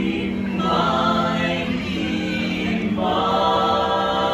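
Barbershop quartet of four men singing a cappella in close harmony, holding long chords that change twice.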